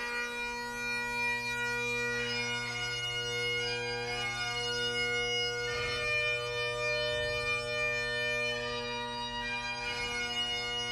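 Bagpipes playing a slow lament: steady drones under a melody of long-held notes that changes pitch every second or two, echoing in a large stone chapel.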